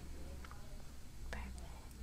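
Quiet room: a low steady hum with a few faint short clicks.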